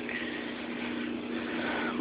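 Reef aquarium pumps and water circulation running: a steady low hum under an even hiss.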